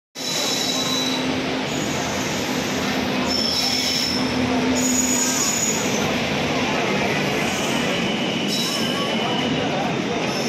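A passenger train hauled by a WAP-7 electric locomotive rolls through a station, a steady rumble of coaches on the rails with high wheel squeal that comes and goes. A low steady hum runs through the first five seconds.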